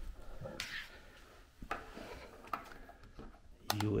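Light handling of USB cables and plugs on a wooden table: a few faint, short clicks and knocks.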